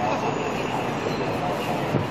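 Steady city street noise: a continuous rumble of traffic with faint voices mixed in.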